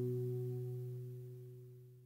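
The final strummed chord of an acoustic guitar ringing out and fading away, dying out near the end.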